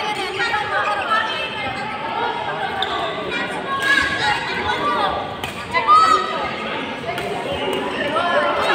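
Indoor badminton rally: a few sharp racket hits on the shuttlecock and players' footsteps on the court, with people's voices throughout, echoing in a large hall.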